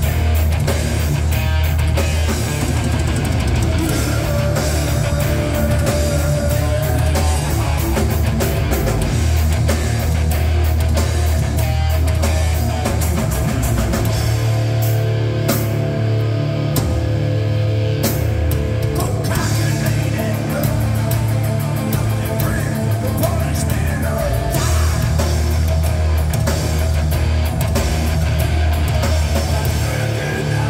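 Heavy metal band playing live and loud: distorted electric guitars, bass and a full drum kit driving a fast beat. About halfway through the cymbals drop out for a few seconds while the guitars hold ringing chords, then the full band comes back in.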